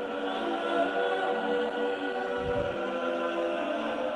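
Choral music: voices singing long held notes that shift slowly from chord to chord.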